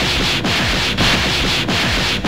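Cartoon fight sound effect: a loud, continuous, gritty rushing noise that dips briefly about every half second.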